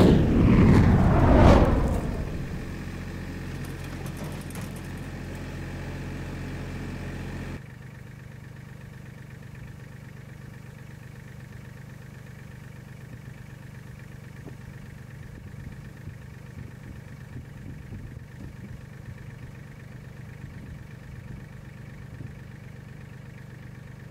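A loud scraping crash that falls in pitch over the first two seconds, then an engine idling steadily; about seven and a half seconds in, the idle drops suddenly to a quieter level and runs on.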